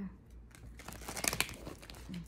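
Oracle card deck handled and shuffled by hand: a run of light papery crackles and clicks from the cards, thickest in the second half.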